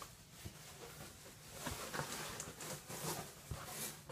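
Faint rustling and soft clicks of handling in a small room, scattered and busier in the second half.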